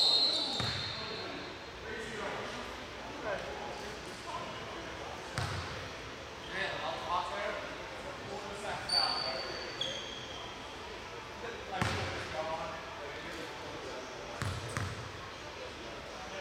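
A basketball bouncing a few separate times on a hardwood gym floor, each a single thump echoing in the large hall, with faint distant voices between.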